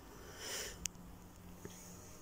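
A person's short sniff, a breath in through the nose lasting about half a second, then a sharp click and a fainter click about a second later.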